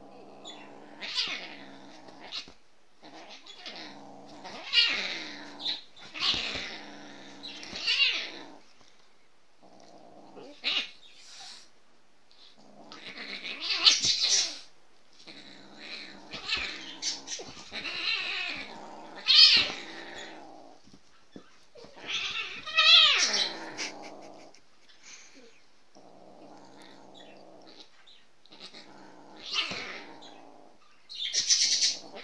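A kitten growling and yowling in repeated bursts of a second or two while it tussles with a dog. The loudest yowls fall around the middle, and one wavers up and down in pitch.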